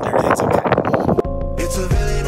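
Wind buffeting the microphone, cut off about a second in by background music with held notes and a bass line.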